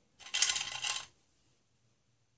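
Hard plastic surprise eggs and toy cases clattering against each other as a hand rummages through a box of them, one burst of rattling lasting just under a second.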